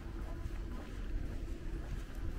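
Low, uneven rumble of wind on the microphone over faint outdoor street ambience.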